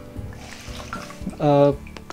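A foam sponge being dunked into a plastic bowl of water and lifted out, water sloshing and dripping back into the bowl: the sponge is being loaded with plenty of water for felting clay plaster.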